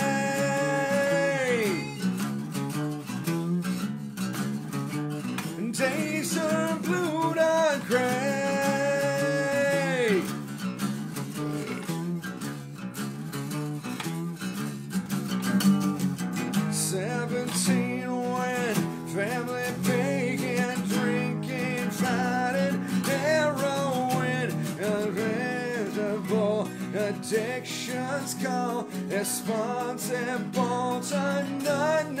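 Two acoustic guitars strummed together under a man's singing voice. He holds long sung notes that drop off at their ends, one at the start and another about ten seconds in, followed by shorter sung phrases.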